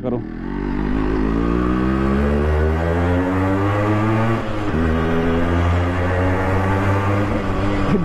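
Yamaha RX100's two-stroke single-cylinder engine pulling under acceleration, its pitch climbing for about four seconds. It drops briefly about halfway through, at a gear change, then runs on at a high, steady pitch. The exhaust note echoes off the walls of the narrow lanes.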